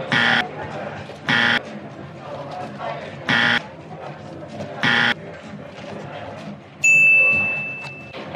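Four short, harsh electronic buzzes about a second and a half apart, then a single bright ding about seven seconds in that rings and fades.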